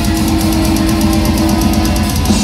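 Heavy metal band playing live and loud: distorted electric guitars and bass holding a low note over fast, steady drumming on a drum kit.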